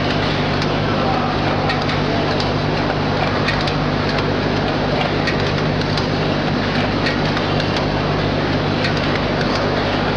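Automatic cartoning machine running steadily: a continuous low hum under a dense mechanical clatter, with scattered faint light ticks.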